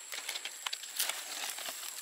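Stiff, spiny pineapple leaves rustling and crackling as a hand twists a sucker off the base of the mother plant: a run of small irregular crackles and scrapes, with no single loud snap.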